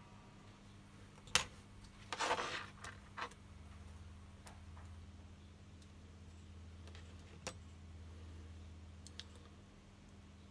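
Small plastic-and-metal clicks and a brief scrape from a Samsung 3510 mobile phone being taken apart by hand with a metal pick: a sharp click about a second and a half in, a short scrape just after two seconds, another click, then a few faint ticks. A low steady hum sets in after about three and a half seconds.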